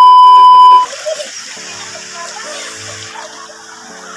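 Loud, steady test-tone beep near 1 kHz, the sound effect that goes with a TV colour-bars transition, lasting under a second and cutting off abruptly. It gives way to background music with a hiss over it and a repeating low note.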